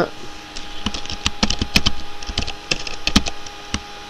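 Computer keyboard keys clicking in a quick, irregular run as a word is typed.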